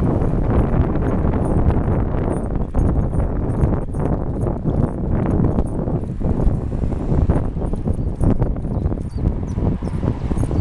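Wind buffeting the microphone of a camera riding on a bicycle, with a continual run of irregular knocks and rattles as the bike goes over the road surface.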